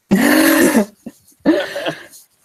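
Two loud wordless bursts of a person's voice over a video call: the first about three-quarters of a second long, the second shorter, about a second and a half in.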